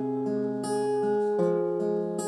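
Acoustic guitar chords strummed and left ringing, with a change of chord about two-thirds of the way through.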